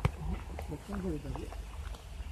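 Quiet talking over a steady low rumble, with a single sharp click right at the start.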